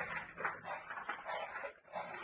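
A dog barking, a few short barks in quick succession.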